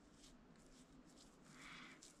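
Near silence: room tone, with a faint, soft brushing hiss near the end as a paintbrush wet with lighter fluid strokes across the clay.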